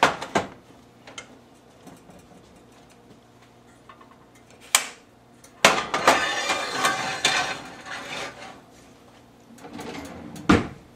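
Cast iron cookware being handled on an electric stovetop: a few knocks at the start, a sharp clink a little before halfway, then about three seconds of clattering and scraping as a heavy cast iron baking pan is moved onto the stove.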